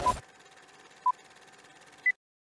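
Film-leader countdown beeps: two short, identical beeps one second apart over a faint crackling film hiss. A loud burst of noise cuts off just after the first beep.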